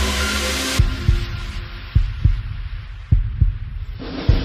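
Suspense soundtrack: the music drops out about a second in, leaving a deep heartbeat-like double thump that repeats about once a second.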